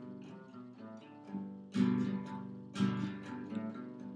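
Acoustic guitar played without voice: soft picked notes, then two louder strums about a second apart from about halfway.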